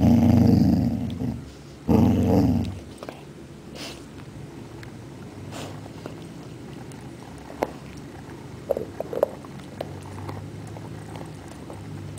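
Basset hound growling in two short, loud bursts in the first three seconds, then faint clicks of chewing.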